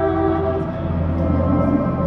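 Live improvised band music: several held, overlapping tones over a steady low drone, with the pitches shifting now and then.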